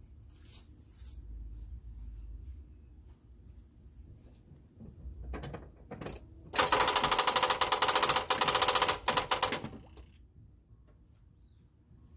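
1998 Dodge Dakota engine running at idle with its serpentine belt and pulleys turning, a low steady hum. About halfway through, a loud, fast, even rattle of sharp clicks lasts about three seconds and stops.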